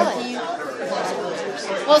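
Background chatter of several people talking in a room, with a nearer voice starting up just before the end.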